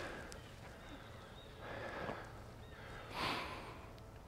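Welsh pony breathing out hard twice: a soft breathy exhalation about two seconds in and a louder one near the end.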